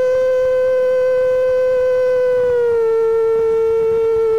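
A singer holds one long, steady note in a song, stepping slightly down in pitch about two and a half seconds in.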